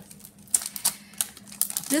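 Irregular clicks and crackles of plastic-wrapped craft packaging being handled and moved, several sharp ticks a few tenths of a second apart. A woman's voice starts right at the end.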